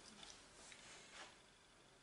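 Near silence, with a few faint soft touches of a kitchen knife cutting through a sheet of dough on a silicone baking mat.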